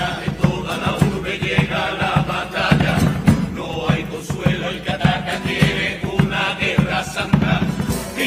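A carnival comparsa chorus chanting together in unison over guitars and a steady drum beat.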